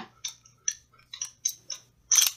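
A BB pistol being handled: a string of about eight light, separate mechanical clicks from the gun's parts as fingers work at the slide.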